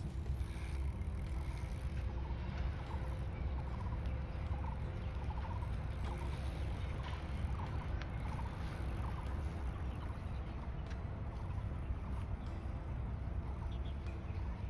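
Steady low rumble, like wind on the microphone, with a bird calling in short stuttering notes repeated about once a second through the middle.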